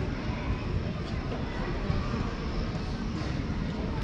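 Steady low outdoor rumble with a hiss above it, with no distinct events.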